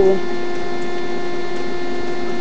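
A steady electrical hum, one constant tone with fainter higher tones above it, over an even background hiss.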